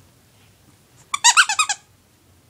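Squeaker in a plush ladybug toy squeaked in a quick run of about seven squeaks, a little over a second in, lasting about half a second.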